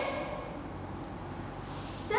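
Room tone: a steady, even hiss with a faint low hum underneath.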